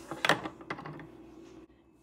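Metal spoon stirring hot cocoa in a ceramic mug: a few sharp clinks and scrapes against the mug, the loudest about a quarter second in, dying away near the end.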